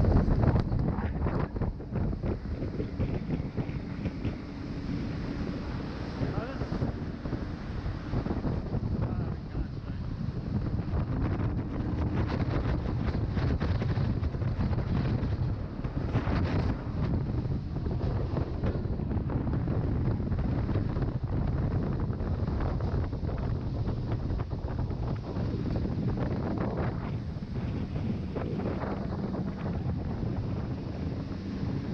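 Fast open tour boat running at speed through churning tidal rapids: a steady engine drone under heavy wind buffeting on the microphone and rushing white water.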